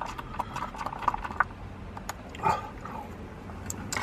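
A stirrer knocking and scraping inside a paper cup of hot chocolate as the drink is mixed, a run of light, irregular clicks.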